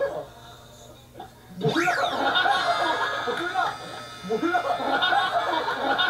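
Men talking and laughing on a TV variety-show soundtrack, starting about two seconds in after a quieter stretch, with a short rising sound effect as the talk begins.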